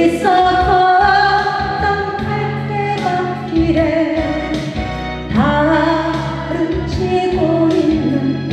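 A woman singing a slow Korean trot ballad into a microphone over instrumental accompaniment, holding long notes with vibrato; a new phrase starts with an upward slide about five seconds in.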